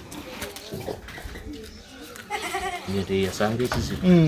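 A farm animal calling, a wavering pitched cry heard several times in the second half.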